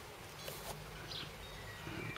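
Faint outdoor background: a low steady hum, a brief rustle about half a second in, and a short high chirp about a second in.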